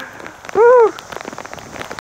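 Heavy rain falling steadily on a wet paved road, with many small drop hits. About half a second in, one short high-pitched laugh rises and falls in pitch, louder than the rain.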